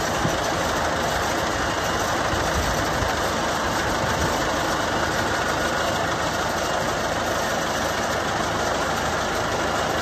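Bandit 150XP wood chipper's diesel engine running steadily, with no change in pace.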